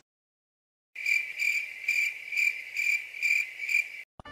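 Cricket chirping in an even rhythm, about two chirps a second, starting abruptly about a second in after a moment of silence.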